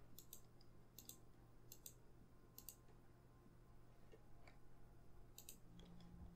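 Near silence: a steady low hum with five faint, sharp double clicks, four in the first three seconds and one near the end.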